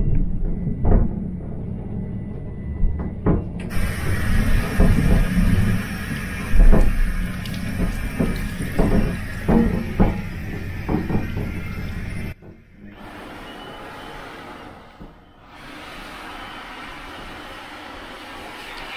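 A train toilet's combined soap, water and hand-dryer unit running: a steady hiss starts about four seconds in, drops suddenly to a quieter hiss about twelve seconds in, and pauses briefly near fifteen seconds. The water is super powerful, enough to splash the lens. Background music with a beat plays under it until the drop.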